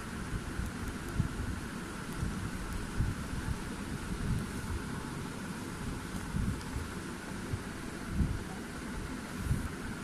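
Handling noise from a handheld phone microphone: irregular low bumps and rumbles over a steady background hiss.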